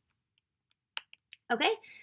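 Silence, then a sharp click about a second in followed by a few fainter clicks: a computer click advancing the presentation slide.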